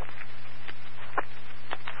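Fire department radio channel open between transmissions: steady radio static with a low hum, broken by three sharp clicks.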